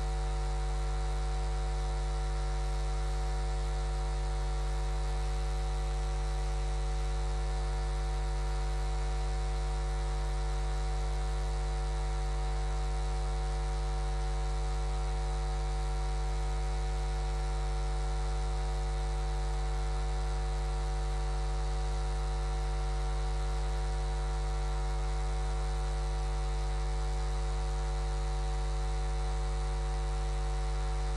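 Steady electrical mains hum, strongest at its low base tone, with a buzzy row of higher overtones. It holds unchanged throughout, and no speech comes through over it.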